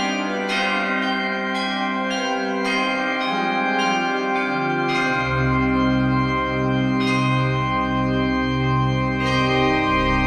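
Background organ music with bell-like struck notes sounding every half second or so. Deep bass notes join in about halfway through.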